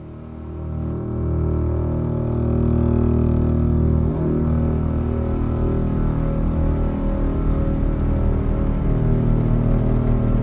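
Dark, droning synthesizer music, a deep sustained chord that swells in over the first second and then holds, with a fast low throb running under it from about four seconds in.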